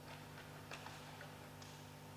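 Faint scattered clicks and taps, about half a dozen, as readers step up to a lectern and its microphone, over a low steady electrical hum.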